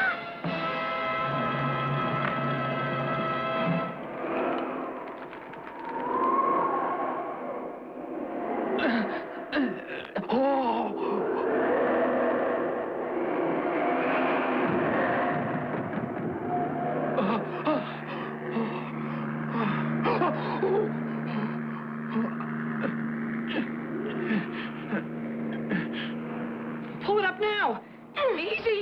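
Dramatic cartoon background music mixed with sound effects and wordless vocal sounds. A held chord opens it, sliding pitch glides follow, and sharp hits are scattered through the second half over a steady low drone.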